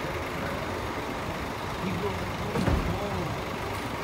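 Diesel engine of a large coach bus running at a standstill, a steady rumble, with people's voices faintly in the middle.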